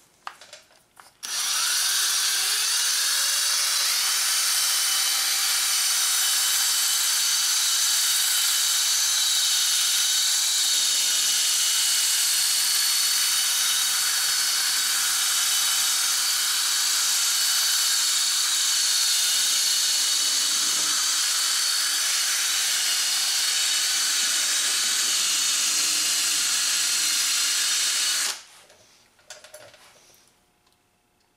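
Cordless drill spinning a Mothers PowerBall foam polishing ball against a plastic headlight lens at high speed, polishing the hazed lens with compound. A steady whine that starts about a second in, rises in pitch as the drill winds up, and stops suddenly shortly before the end.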